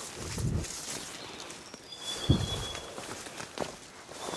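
Footsteps and rustling as someone pushes through jungle undergrowth over leaf litter and branches, with a heavy footfall thud about two seconds in, the loudest sound. A thin, high, steady call sounds faintly for about a second around the same time.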